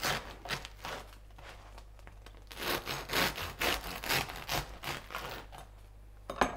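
Knife sawing through a homemade sourdough loaf on a cutting board: a few back-and-forth strokes at the start, a brief lull, then a steady run of sawing strokes, a few each second, through the second half.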